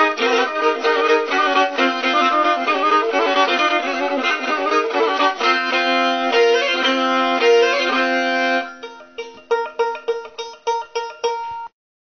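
Black Sea kemençe bowed in a quick run of notes with two strings sounding together, moving into a few held notes. About nine seconds in it drops to quieter short separate notes that ring and die away, then the sound cuts off suddenly.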